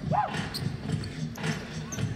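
A basketball being dribbled on the court, with a brief voice just after the start.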